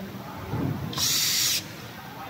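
Cordless drill-driver running in one short burst of about half a second, about halfway through, on a screw in the scooter deck.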